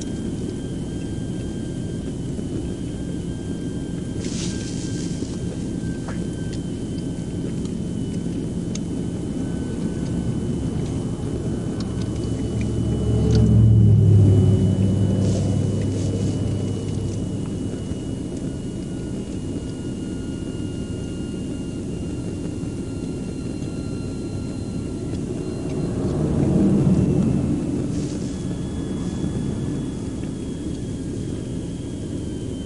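Steady low road rumble beside a highway, with two passing vehicles that swell and fade, one about fourteen seconds in and a car about twenty-seven seconds in.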